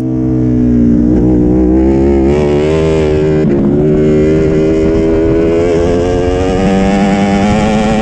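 Ducati Panigale V4 motorcycle's V4 engine accelerating hard on the throttle out of a corner, its pitch climbing steadily with a brief dip about three and a half seconds in before rising again.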